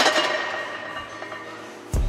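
A heavily loaded steel barbell and its weight plates clanking once on a bench-press rack, with a metallic ring that fades over about a second and a half. Music with a heavy bass comes in near the end.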